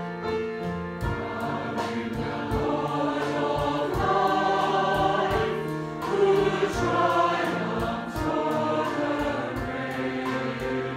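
Mixed choir singing a worship song in harmony, joined about a second in by a regular percussion beat.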